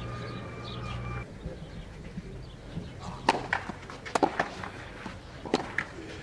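Outdoor tennis-court ambience. A faint steady tone lasts about the first second and stops abruptly. After that come scattered short light taps and scuffs, about three to four seconds in and again near the end, like footsteps and movement on a clay court between points.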